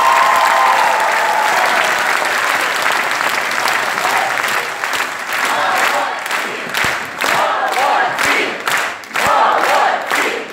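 A theatre audience applauding and cheering, with a long held shout near the start. From about halfway, the applause turns into rhythmic clapping in unison, about three claps a second.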